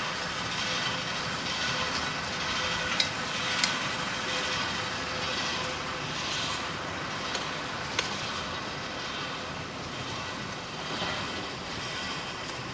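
Steady mechanical noise of a stone-crushing plant running, with its conveyor belts carrying gravel. A faint steady hum fades out about halfway through, and a few sharp knocks stand out, the clearest about three and a half seconds and eight seconds in.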